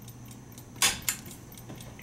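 Drop bolt of an antique safe's boltwork falling by gravity with a sharp metallic click a little under a second in, then a smaller click. The bolt drops because the time lock has been set off guard, freeing the boltwork to be moved.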